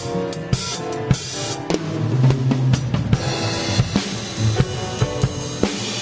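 A drum kit played by hand in a live band, with snare, bass drum and cymbal hits in a steady stream, over walking low notes from an upright double bass.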